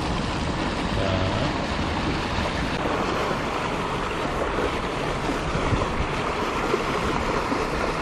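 Steady rush of water gushing out of a corrugated metal culvert pipe into a pool, churning white at the outflow.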